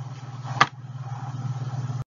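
A steady low hum with a fast flutter, broken about half a second in by one sharp click; the sound cuts off abruptly at the end.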